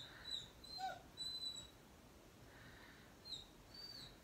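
Faint, high-pitched whimpering squeaks from a pet: several short thin calls in the first second and a couple more near the end.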